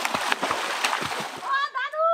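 Pond water splashing hard and repeatedly as a swimmer churns the surface. Near the end the splashing gives way to a voice calling out in a long, held, high cry.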